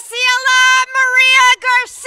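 A spectator's high-pitched, very loud cheering shout close to the microphone: several short held syllables, then a long call starting near the end that slides down in pitch.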